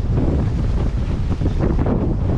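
Strong wind buffeting the microphone in a steady low rumble, over the wash of a choppy sea.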